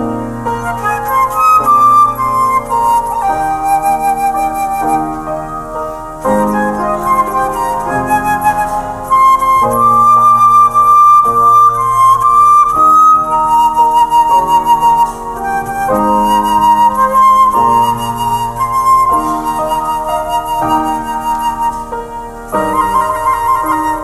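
Concert flute playing a slow melody of long held notes over chordal keyboard accompaniment.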